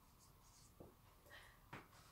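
Very faint marker pen strokes on paper, followed by a few soft knocks in the second half.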